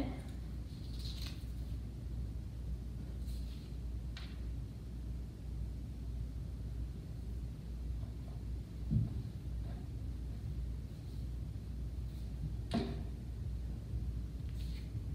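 Steady low room hum with a few light taps and clicks from craft supplies (glue bottle, glue stick, paper) being handled on a tabletop; a soft low thump about nine seconds in is the loudest sound.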